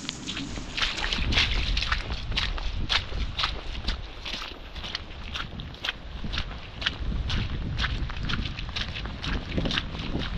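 Footsteps on a wet, muddy path at a walking pace, about two steps a second, with wind rumbling on the microphone.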